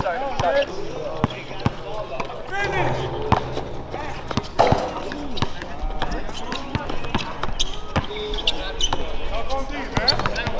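Basketball bouncing on an outdoor court, a scattering of irregular thuds, with background talk from players and onlookers.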